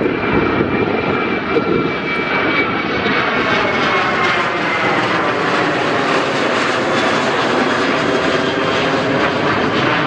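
Boeing 737 jet airliner climbing out low overhead just after take-off, its two turbofan engines at take-off power. It makes a loud, steady roar with a high whine that slides slowly down in pitch as the aircraft passes, then a sweeping, phasing rush as it moves away overhead.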